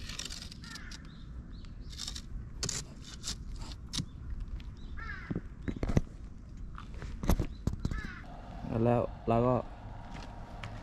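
Harsh bird calls, caw-like, several times over the forest background, with scattered sharp clicks and knocks.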